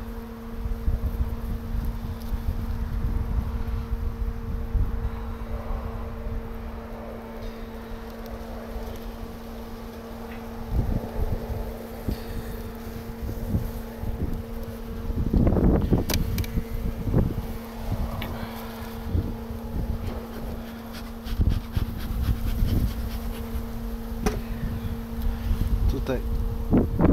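A strong honeybee colony in an open hive, buzzing as one steady hum with its overtone. Underneath are low wind rumble on the microphone and scattered knocks and scrapes of a metal hive tool against wooden frames, the loudest a little past halfway.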